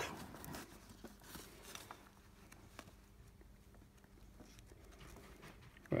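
Faint handling noise from a stamp album: light taps and paper rustles, mostly in the first two seconds, then low room noise.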